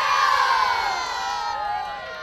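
A large group of children cheering and shouting together: one loud cheer that is strongest at the start and fades away over about two seconds.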